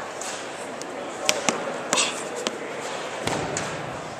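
Echoing crowd chatter in a large indoor field house, broken by several sharp knocks and a heavier thud about three seconds in, from a shot put throw.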